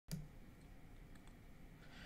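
Near silence: faint room tone, with a single soft click at the very start.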